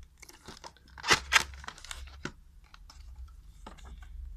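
A black plastic video-rental VHS case being opened by hand: a run of crackling plastic clicks, two loud snaps about a second in as the case comes open, then a few softer clicks of handling.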